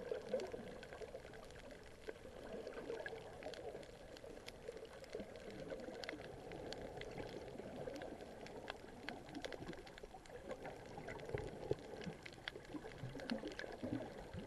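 Underwater sound picked up by a camera in a waterproof housing: a muffled, steady wash of moving water with many scattered sharp clicks.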